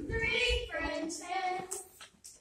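A group of voices singing, children's voices among them, with held notes that stop shortly before the end.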